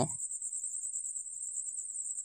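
A faint, steady, high-pitched trill with a rapid even pulse, like an insect's chirping, running on in the pause between spoken lines.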